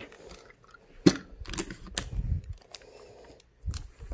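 Sticky tape being applied to a torn sheet of paper, with paper rustling and hand taps on the table. A sharp click about a second in is the loudest sound, followed by a few smaller clicks.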